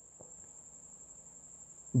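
Quiet room tone with a steady high-pitched whine, one unbroken tone that does not pulse or change, and a faint click shortly after the start.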